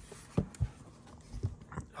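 Leather deck box being closed and set down: about four soft taps and knocks spread over two seconds.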